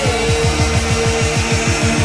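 Electronic music soundtrack: a rapid run of falling bass sweeps, about eight a second, under held synth notes, one of which slides down in pitch right at the start.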